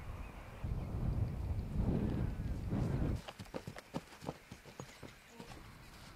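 Low rumble of wind on the microphone for a couple of seconds, then a quick irregular run of light clicks and taps as a haltered horse is led on a chain lead shank.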